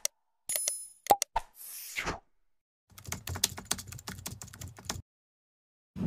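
Sound effects of a subscribe-button animation: a few mouse-click taps and a short bright ding in the first second and a half, a brief whoosh, then about two seconds of rapid keyboard typing clicks.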